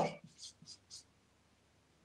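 Dry-erase marker writing on a whiteboard: three short, faint strokes in the first second.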